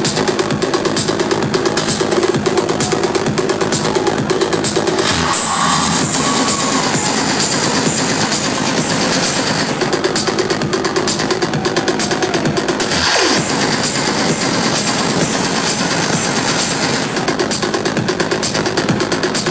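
Loud live electronic dance music over a concert sound system, with a fast, steady beat. The track changes briefly about five seconds in, and a falling sweep comes about thirteen seconds in.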